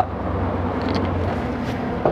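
Steady low hum and rumble of outdoor background noise, even in level throughout.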